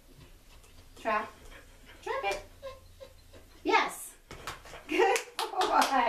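A woman's voice in short spoken bursts, encouraging a dog, with a few sharp hand claps near the end.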